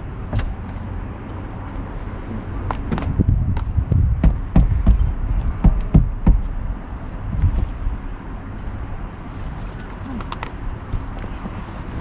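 A pair of running shoes knocked together and tapped to shake sand out of them: a run of irregular knocks and taps, thickest in the middle seconds, over a steady low rumble.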